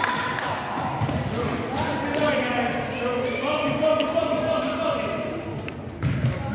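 Echoing gymnasium sound during a youth basketball game: voices of spectators and players talking, with scattered thuds of a basketball bouncing on the hardwood court.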